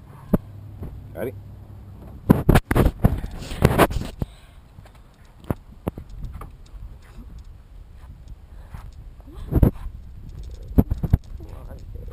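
Rustling and a cluster of knocks about two to four seconds in as a person is helped up out of a car seat, over a steady low rumble.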